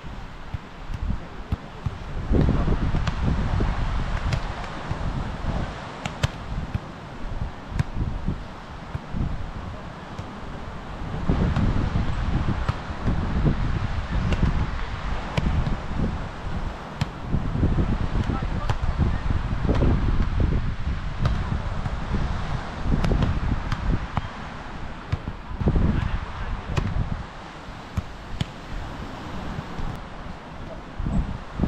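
Wind buffeting the microphone in gusts, with occasional sharp slaps of a volleyball being struck by hand during rallies.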